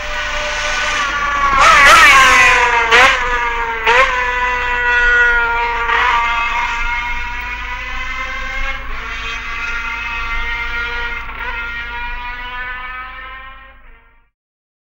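Racing motorcycle engine running at high revs. Its note breaks sharply three times about two, three and four seconds in, as with gear changes, then holds a high note that slowly drops in pitch and fades away.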